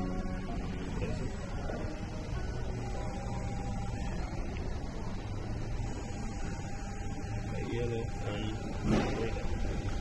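Guitar music fading out in the first second, then a steady low mechanical hum with a faint whine from a computerised paint tinting machine dispensing colorant into a bucket of paint.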